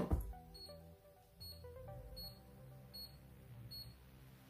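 Soft background music with a mini HIFU handset giving a series of short, faint high beeps, roughly two a second, as it fires its pulses into the skin.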